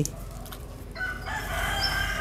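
A rooster crowing: one long, drawn-out call that starts about a second in.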